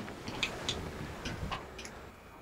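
A few light, sharp clicks with soft rustling, about five spread over two seconds, as a person moves quickly.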